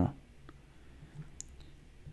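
Two faint clicks of a stylus tapping a tablet screen, about half a second in and again about a second later, over quiet room tone.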